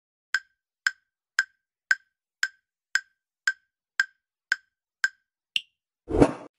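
Countdown timer sound effect: ten short ticks, about two a second, with the last tick higher in pitch, marking that the time to answer has run out.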